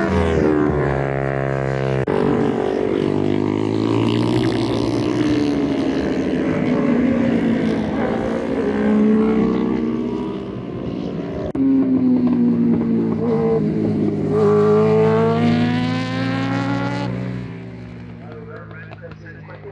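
Racing motorcycle engines passing on the track, their pitch rising and falling with the revs and as the bikes go by. The sound falls away shortly before the end.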